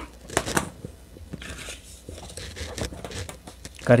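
Soft handling sounds of card and a steel ruler being moved over a metal-topped work table, with a sharp tap about half a second in and faint scraping after it.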